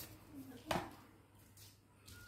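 A single sharp snap a little under a second in, with faint short voice sounds around it.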